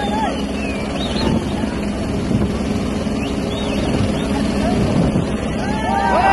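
Helicopter hovering low overhead: a steady rotor and engine drone, with people shouting over it.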